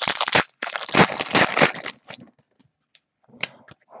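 Foil trading-card pack wrapper crinkling and tearing as it is opened by hand, for about two seconds before it stops.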